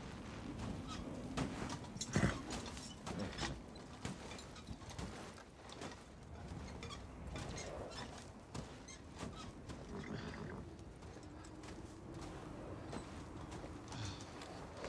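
A team of harnessed stagecoach horses standing in blizzard wind, with scattered clinks and crunches of hooves, harness and footsteps in snow.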